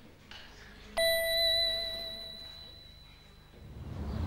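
A single bright bell-like chime, struck once about a second in and ringing on as it fades away over about two and a half seconds.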